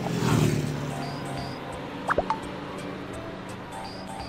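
Edited-in background music with a whooshing sound effect at the start, falling away over the first second, and a quick pitched 'bloop'-like blip about two seconds in.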